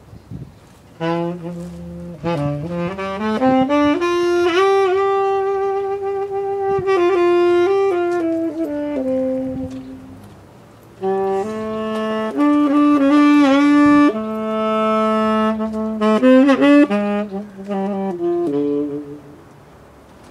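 Solo saxophone played live, unaccompanied: an improvised phrase of quick rising runs settling into long held notes, a pause of about a second halfway through, then a second phrase of held notes and fast runs with a bent note in the middle.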